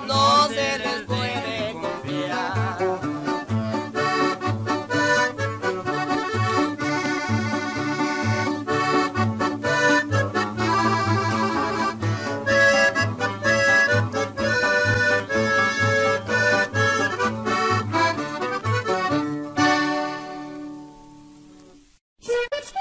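Norteño music: a button accordion plays an instrumental passage over a steady bass pulse, the song's closing instrumental, which fades out near the end.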